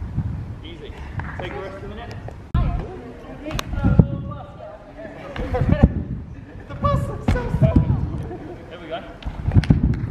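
A trampoline bed thudding each time a jumper lands on it, about every second and a half, with voices talking in the background.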